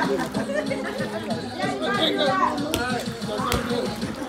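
Several people talking and calling out over one another, with two short sharp knocks about three seconds in.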